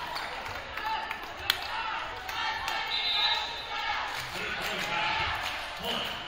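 Players' voices shouting and calling in an echoing gym, with one sharp slap about a second and a half in.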